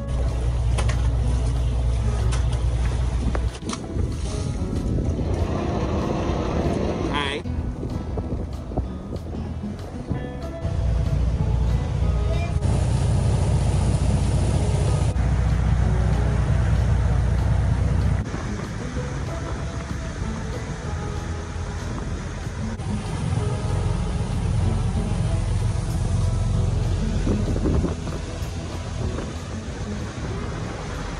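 A boat under way: engine rumble and water and wind noise, in several short stretches that start and stop abruptly.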